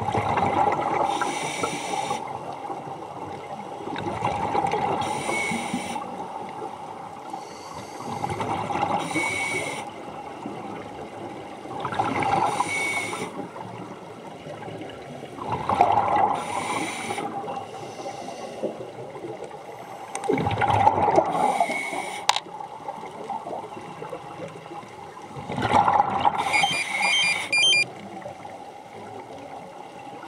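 Scuba diver breathing through a regulator underwater: seven breaths about every four to five seconds. Each is a hiss of air drawn through the demand valve, with a faint whistle, and a rush of exhaled bubbles.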